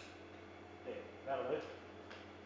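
A man's voice, briefly mumbling about a second in, over a steady low hum.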